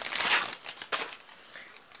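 Packaging crinkling as it is handled and opened, loudest in the first half second, with a short click about a second in and softer rustling after.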